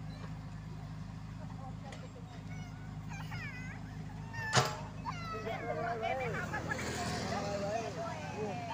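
Komatsu PC78UU mini excavator's diesel engine running steadily as it works its hydraulics to swing a bucket of dirt over a dump truck. There is a single sharp knock about halfway through, and the engine note grows heavier near the end as the load is worked.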